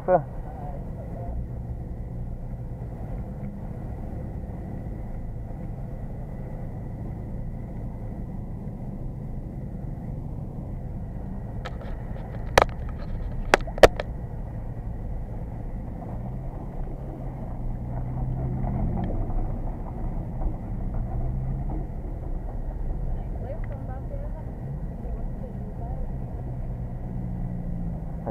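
BMW 330's straight-six engine running at low revs, heard from inside the cabin while the car creeps along, swelling a little about two-thirds of the way through. A few sharp clicks come about halfway.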